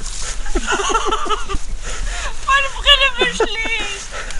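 Indistinct human voices: people chattering without clear words.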